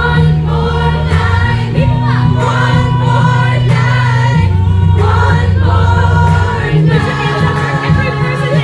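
Live pop band with a female vocal group singing in harmony through a PA, over long held bass notes that change every few seconds.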